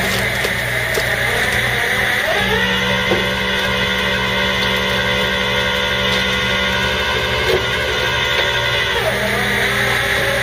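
Flatbed tow truck's winch pulling a car up onto the bed, with the truck's engine and hydraulics running as a steady whine. The pitch steps up about two seconds in, holds, and drops back near the end.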